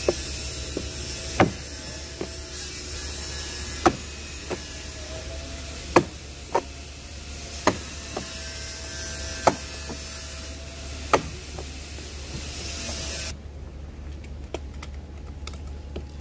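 Sharp clicks every second or two as a tube wrench is pressed through a plastic pond liner to punch bolt holes around a PVC bottom-drain fitting. A steady hiss underneath cuts off abruptly about thirteen seconds in.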